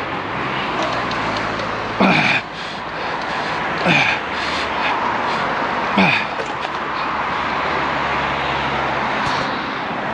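Steady rushing wind and road noise while cycling a bike-share bicycle beside traffic, with three short sounds sliding down in pitch about two seconds apart.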